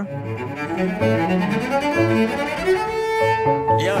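Cello playing a bowed melody over piano accompaniment, moving through short notes before holding one long note near the end.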